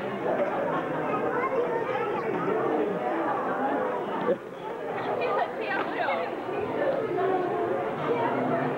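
Indistinct chatter of many voices in a busy restaurant dining room, with a single short knock about four seconds in.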